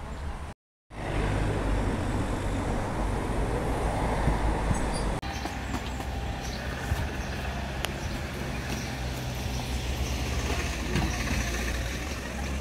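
Steady outdoor street background with a low rumble of road traffic. It drops out to silence for a moment just under a second in, and its character shifts abruptly about five seconds in.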